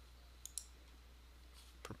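Computer mouse clicks: a quick pair of clicks about half a second in, and a fainter click near the end, over a low steady electrical hum.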